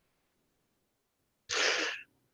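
Near silence, then about one and a half seconds in a single short, sharp breath into a microphone, lasting about half a second, just before speech resumes.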